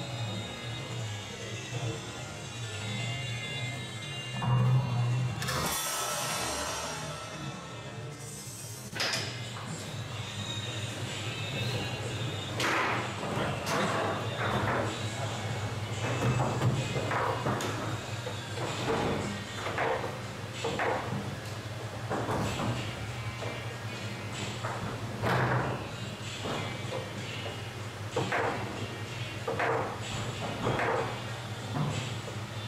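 Foosball table in play: irregular sharp knocks of the ball striking the plastic men and table walls, with rods clacking, over background music. About six seconds in, a rushing noise lasts a few seconds before the knocks begin.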